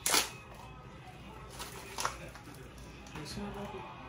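Plastic wrapper of a freeze-dried ice cream bar torn open with a sharp rip, followed by a shorter crinkle of the packaging about two seconds later.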